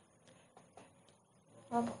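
Faint, steady high-pitched buzz of insects in the background, with a few faint ticks. A woman says a short "oh" near the end.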